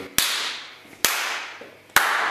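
Three hand claps a little under a second apart, each ringing out in a long natural reverb tail that dies away before the next, in a glass-walled room used as a natural reverb chamber for drum recording.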